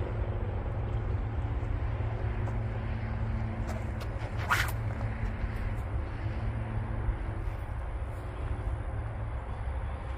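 Steady low wind rumble on the microphone with a faint engine-like hum, and one brief whoosh about four and a half seconds in as the Dyneema rope sling is whipped through its release.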